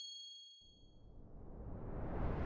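Logo-animation sound effect: the ringing tail of a high, metallic ding fades out over about the first second, followed by a rushing swell of noise that grows louder toward the end.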